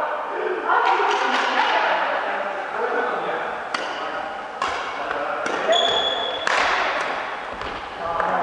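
Badminton rally: several sharp racket-on-shuttlecock hits, irregularly spaced about a second apart, over background voices, with a brief high squeak near six seconds in.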